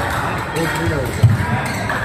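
Thumps of badminton players' feet on the court, the sharpest a little after halfway, with voices in the hall.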